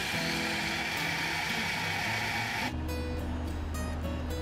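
Portable bottle blender running, its motor blending a smoothie, then cutting off abruptly about two and a half seconds in. Background guitar music plays throughout.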